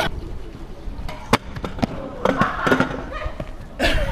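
Stunt scooter knocking on paving stones: several sharp clacks of deck and wheels hitting the ground, the loudest about a second and a half in and again just before the end.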